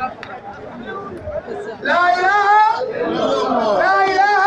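Crowd chatter, then about two seconds in a man's loud, drawn-out voice over a microphone.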